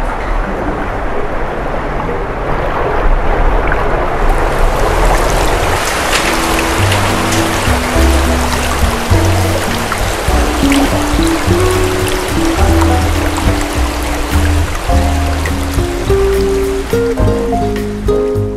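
A steady rush of flowing water, growing brighter about four seconds in, with music coming in after about six seconds: low bass notes under a slow melody of held tones.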